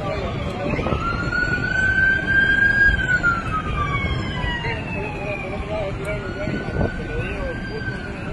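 Emergency vehicle siren wailing: its pitch rises about a second in, holds, slides slowly down, then climbs again past the middle and holds. Faint voices sound underneath.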